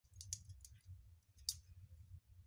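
Fire crackling in a cast-iron stove: a few faint, sharp crackles, the loudest about one and a half seconds in, over a low steady rumble.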